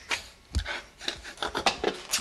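A bearded face rubbing and scraping against a framed picture on a wall: a quick, irregular run of short rasping strokes starting about half a second in.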